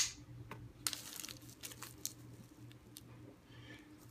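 Bubble wrap around a small package being handled, giving faint crinkling and scattered light clicks, after one sharp knock right at the start.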